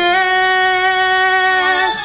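A woman's solo singing voice holding one long, steady high note for almost two seconds, then releasing it near the end: the closing note of the song.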